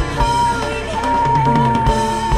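Live rock band playing: drum kit beat and guitar under a long, slightly wavering held high note.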